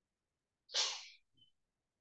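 A single sharp burst of breath from a person, about half a second long, starting suddenly about two-thirds of a second in and fading quickly.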